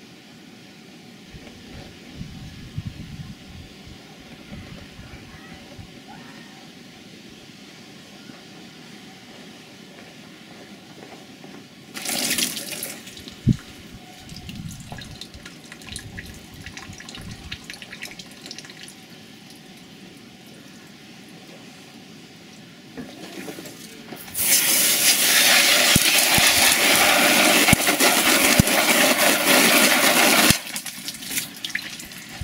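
Wind rumbling on the microphone, then a brief splash of water about twelve seconds in, and near the end a loud, steady jet of water sprayed onto the burning plastic multiway adaptor for about six seconds to put out flames that will not self-extinguish.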